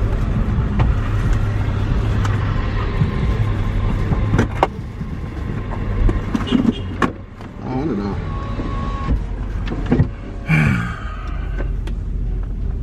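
Steady low rumble of a stationary car heard from inside the cabin, with a few sharp clicks, a short steady tone about nine seconds in and brief murmurs of voice.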